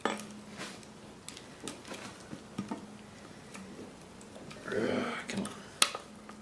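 Scattered light wooden clicks and knocks as wooden tuning pegs are worked in under a tabla's very tight camel-hide straps, with a brief vocal sound about five seconds in and a sharp click just before the end.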